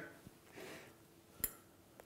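Near quiet, with one sharp click about one and a half seconds in: a metal fork knocking against a small glass bowl as butter is pried out of it.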